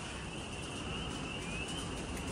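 Quiet woodland ambience with a faint, steady high-pitched tone and a short rising chirp a little past the middle.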